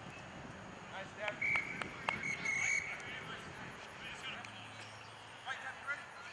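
Referee's whistle blown in a few short, broken blasts about a second and a half in, with brief distant shouts from players near the end.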